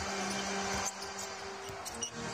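Basketball arena ambience during live play: crowd noise with a steady low held tone that stops shortly before the end, and a few faint sharp ticks.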